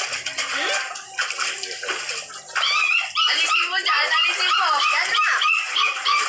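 Water splashing and sloshing in an inflatable kiddie pool. About two and a half seconds in, high-pitched voices take over.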